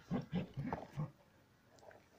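A border collie grunting: four short, low grunts in quick succession in about the first second as it nudges a ball with its nose.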